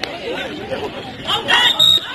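Chatter and calls from players and spectators at a kho-kho match. About one and a half seconds in there is a loud, rising shout.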